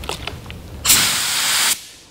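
SATA Jet 100 B RP spray gun spraying water in a short test burst of compressed-air hiss, about a second long, preceded by a few light clicks. The fluid control is turned in for a smaller fan on the test sheet.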